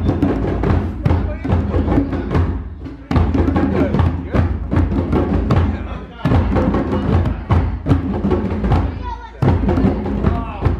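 Hand drumming on a rope-tuned djembe: quick palm and finger strikes in a busy rhythm, breaking off briefly about every three seconds.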